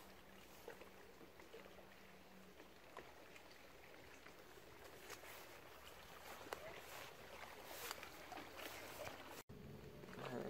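Near silence: faint outdoor ambience with a few soft clicks, and a brief dropout near the end.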